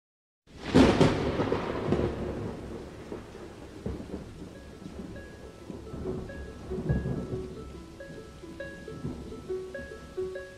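Recorded thunderstorm at the opening of a song: a loud thunderclap under a second in that rolls away over steady rain, with more rumbles at about four and seven seconds. Short notes of the song's melody start about halfway through and come more often near the end.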